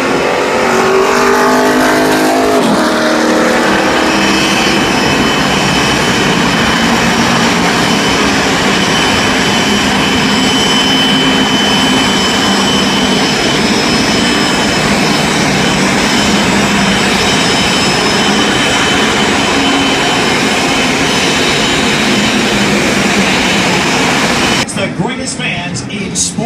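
A pack of NASCAR Cup stock cars with V8 engines running past on the track, a loud, steady engine noise. In the first few seconds the engine pitch falls as cars go by. The sound cuts off abruptly near the end.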